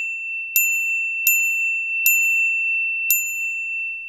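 Editing sound effects: four short, high ringing dings at uneven gaps over a steady high-pitched tone.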